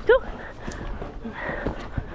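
A single short, sharp dog bark, falling in pitch, right at the start. After it come the dull thuds of a horse's hooves cantering on turf.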